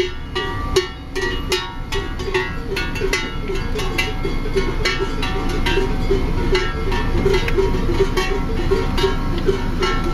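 Many cowbells on a herd of walking cows clanking and jangling irregularly and continuously, over the low rumble of a car engine crawling behind them.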